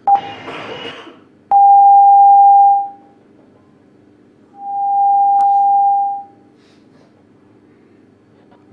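Two long, steady electronic beeps of the same mid pitch, each lasting a second or more, come down the live link after a short burst of noise. The first beep starts abruptly and is the louder; a click falls in the middle of the second.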